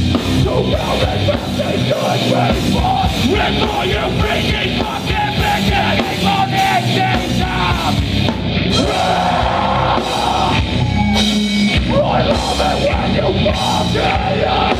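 Hardcore punk band playing live and loud: distorted guitars, bass and pounding drums, with shouted vocals.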